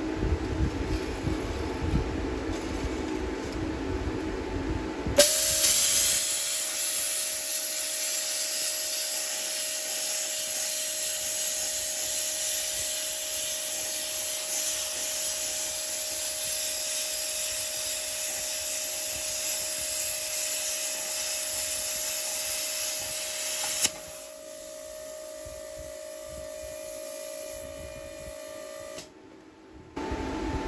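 Handheld plasma cutter, set at 50 amps and 57 psi, cutting through a steel concrete-saw blade. After a low rumble, the arc strikes about five seconds in with a sudden loud hiss carrying a steady tone. It runs evenly for about twenty seconds, then stops, leaving a quieter air hiss that cuts off near the end.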